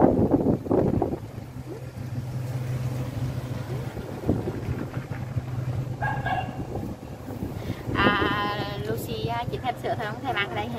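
Baby macaque giving high-pitched squealing calls: a short one about six seconds in and a longer, wavering one about two seconds later, over a steady low hum.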